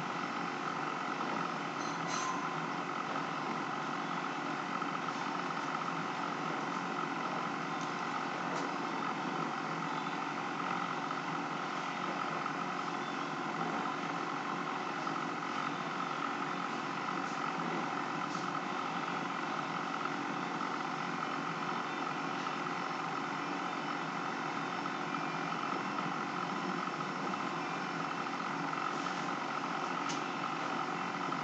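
Steady machine drone with a constant hum, unchanging throughout.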